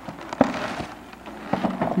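Plastic bag crinkling and rustling as a hand rummages through it, with a sharp click about half a second in.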